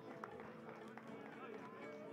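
Faint, distant shouting and cheering of a baseball team celebrating on the field, with a few held voices over a low background hum.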